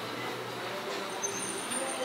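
Steady street traffic noise, with vehicle engines running at low speed.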